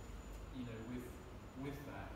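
Speech only: a man talking slowly, in short halting phrases with brief gaps between them.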